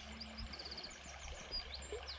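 Small songbirds chirping in short, high notes, with a quick run of repeated notes about half a second in, over the faint murmur of a shallow stream.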